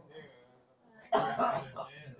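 A person coughs, with a throat-clearing sound, starting suddenly about a second in after a quiet moment.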